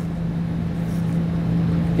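A steady low mechanical hum over a soft hiss, even throughout, with no distinct handling sounds standing out.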